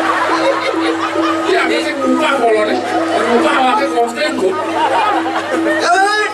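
A man's voice talking into a microphone over the PA, with music playing underneath.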